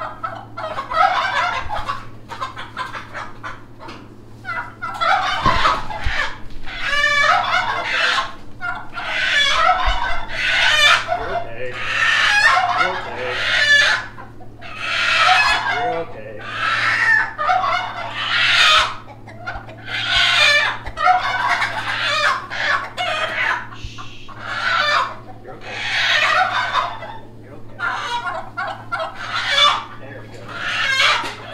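Chicken hens clucking and squawking over and over, a loud call every second or so, the agitated calls of hens stressed from being caught in a net.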